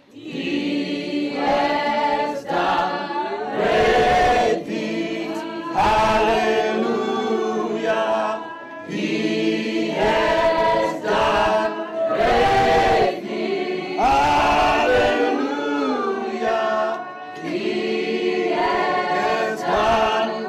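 A choir singing a gospel song, several voices together in sung phrases.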